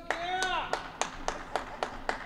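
A few people in the audience clapping, with sharp separate claps about three or four a second, and a high whooping cheer from a voice in the first half second.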